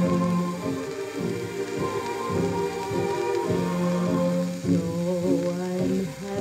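Instrumental dance-orchestra passage playing from a 78 rpm shellac record on a suitcase record player, heard through a small Bluetooth speaker. Held notes sound over a steady hiss and crackle of record surface noise.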